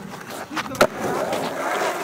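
Skateboard landing a trick over a handrail, with one sharp clack of board and wheels hitting the ground just under a second in. The wheels then roll steadily across concrete.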